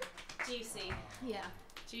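Women speaking quietly in conversation, only speech.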